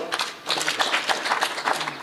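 A crowd applauding: many quick, irregular hand claps.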